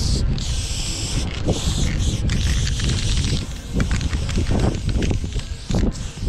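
Aerosol spray-paint can hissing in several long bursts of a second or so as paint is sprayed onto a concrete wall, then in shorter bursts, over a steady low rumble.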